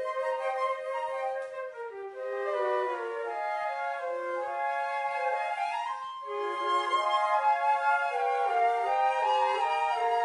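Three concert flutes and a clarinet playing a melody together in harmony, sustained notes moving step by step, with brief breaths between phrases about two seconds in and again around six seconds.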